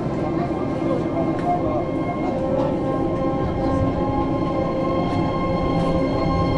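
Disney Resort Line monorail running, heard from inside the car: a steady rumble with a faint constant whine.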